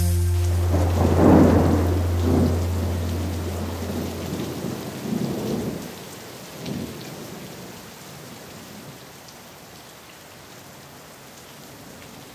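Thunder rumbling over steady rain, several rolls in the first seven seconds and then rain alone, the whole fading out gradually. A low steady tone lies under the first four seconds or so and then stops.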